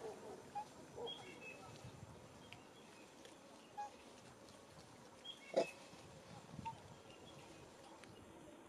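Faint, scattered short animal calls and small high chirps in the open, the loudest a single brief sharp call about five and a half seconds in.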